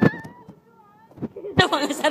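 A high, thin squeal from a person's voice, held with a slight glide and fading out about half a second in, with a few sharp knocks from the phone being handled. Talk and laughter start near the end.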